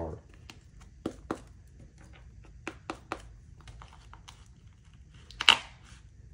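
Light clicks and taps from a stiff homemade Kevlar and UHMWPE armor plate being handled. Near the end comes one short, sharp scrape, the loudest sound, as a razor blade is dragged against the hard plate.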